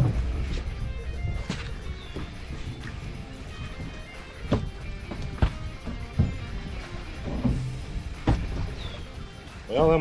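Background music, with a few sharp knocks or clicks scattered through it.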